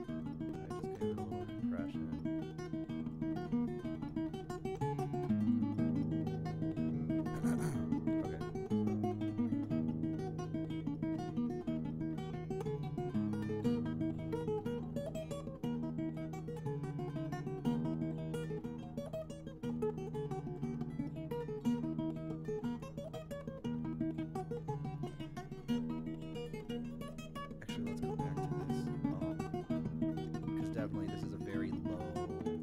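Acoustic fingerstyle guitar recording of a Celtic-sounding tune in Dorian mode playing back, a plucked melody running over held bass notes.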